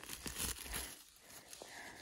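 Dry leaves and forest-floor litter crackling and rustling as a sheep polypore mushroom is pulled up out of the ground by hand, busiest in the first second.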